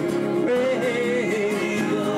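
Live duo of strummed acoustic guitars under a long, wavering wordless vocal note held for about a second and a half.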